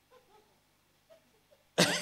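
A man coughs once near the end; the cough starts suddenly and is loud against the quiet before it.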